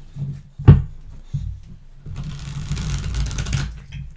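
A tarot deck being handled and shuffled on a wooden tabletop. The deck knocks on the table twice in the first second and a half, then there is about a second and a half of rapid riffling card noise as the two halves are shuffled together.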